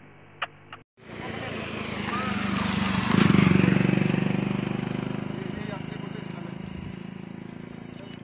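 A road vehicle passing by, its engine and tyre noise growing louder to a peak about three seconds in, then slowly fading away.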